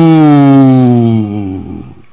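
A man's voice through a microphone and PA: one long drawn-out cry sliding steadily down in pitch, fading away and stopping just before the end.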